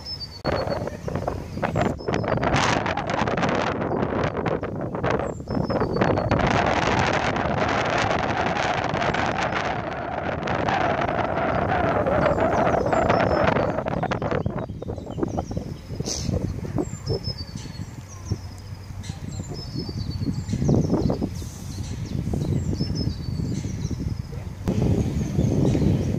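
Gusty wind buffeting the microphone, loud and uneven for the first half and easing later, with small birds chirping short falling notes throughout.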